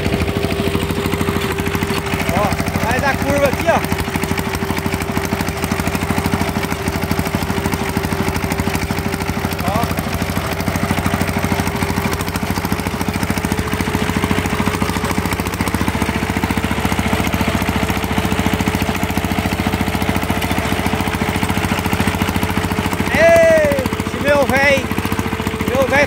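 Tobata Yanmar TC 10 walking tractor's single-cylinder diesel engine running steadily under way on a dirt road, with a steady whine that climbs slightly in pitch about halfway through.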